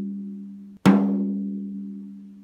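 A drumstick taps a drumhead near a lug once, just under a second in, to sound the lug pitch. The head rings steadily at about 200 Hz with a few higher overtones and slowly dies away. The tail of the previous tap fades out before it.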